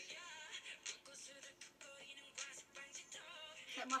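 Pop music with a sung vocal line over a beat.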